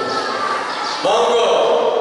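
A man's voice speaking into a microphone. About a second in, it goes over into one long, steady held note.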